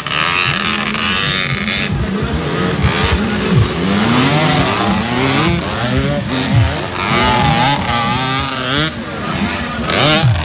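Several dirt bike engines revving hard as they accelerate on a dirt track, their overlapping pitches rising and falling with each gear change.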